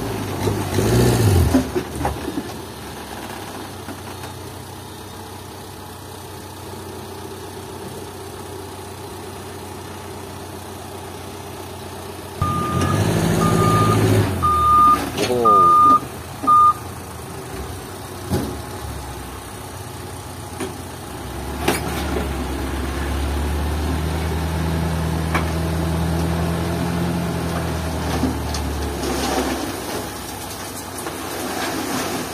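Toyota Dyna dump truck engine idling, then revving from about halfway through as the truck moves, with five short reversing beeps. Later the engine holds a steady, higher note to work the hydraulic hoist as the loaded bed tips up to dump its fill.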